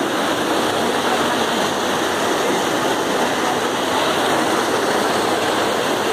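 Water rushing steadily through the concrete channels and troughs of a sand filter at a water treatment plant, the filter being backwashed with its gate open.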